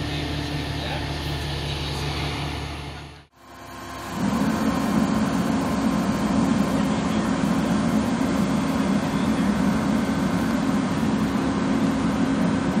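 Aerial ladder truck's engine and hydraulics running steadily with a low hum. Just after three seconds in the sound cuts out briefly, then returns louder and fuller.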